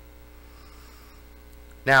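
Steady, low electrical mains hum in a pause between spoken sentences, with a man's voice starting again just before the end.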